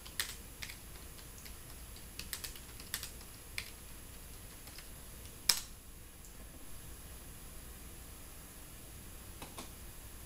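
Keystrokes on a computer keyboard as a short search phrase is typed: irregular single key clicks over the first few seconds, then one louder key press about five and a half seconds in. A couple of faint clicks follow near the end.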